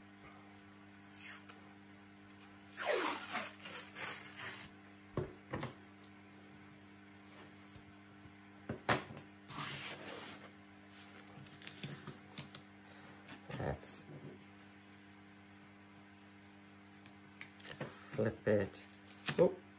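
Chipboard pieces and a roll of black tape being handled on a wooden desk: faint scattered rustles, scrapes and taps as board is slid into place and pressed down, busiest a few seconds in.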